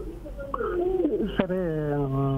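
A man's voice: a few short vocal sounds, then from about halfway one long held, slightly falling vowel, like a drawn-out hum.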